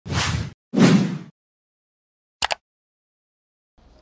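Edited intro sound effects: two quick whooshes, each about half a second long, one right after the other, then a short sharp double hit about a second later. Faint room hum comes in just before the end.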